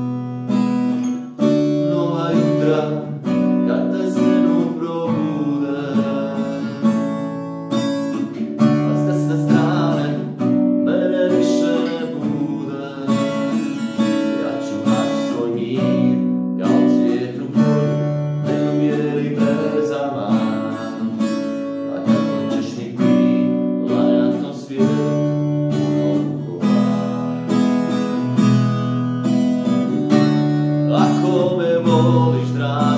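Acoustic guitar strummed in steady chords, with a man singing over it.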